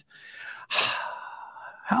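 A person sighing: a faint breath in, then a long, breathy, audible exhale of about a second.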